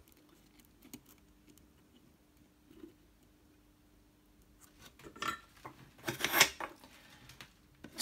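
Small metallic scrapes and clicks as a cloth-covered wire is worked onto the lug terminals of a guitar's metal control plate and blade switch, mostly quiet at first and then a cluster of handling noises about five seconds in.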